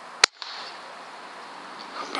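A single air rifle shot: one sharp crack about a quarter of a second in, over a steady background hiss.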